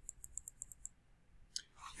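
Computer mouse scroll wheel clicking quickly and evenly, about eight faint ticks a second, through the first second as a web page is scrolled down. A brief soft noise follows near the end.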